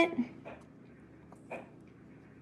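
Faint handling sounds of a sheet of watercolor paper being tilted and shifted to slide loose embossing powder across it: a few soft rustles and taps, the clearest about one and a half seconds in.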